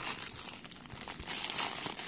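Clear plastic packaging bag crinkling irregularly as it is handled.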